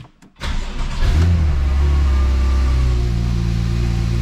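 Porsche 911 Turbo S (991) twin-turbo flat-six starting. It cranks about half a second in, flares briefly as it catches, then settles into a steady idle.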